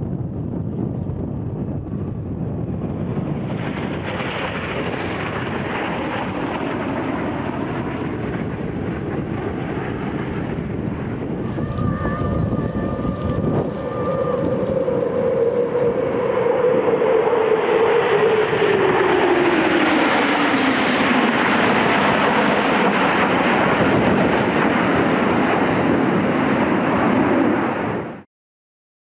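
Military jet aircraft flying over: a steady jet noise, then from about halfway a formation of F-15 fighters passing, louder, with an engine whine that falls slowly in pitch as the jets go by.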